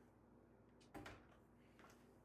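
Near silence: room tone with a faint low hum, broken by one faint click about a second in.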